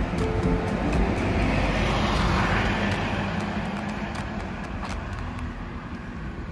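A road vehicle passing by on a city street: its tyre and engine noise swells to a peak about two seconds in, then fades away.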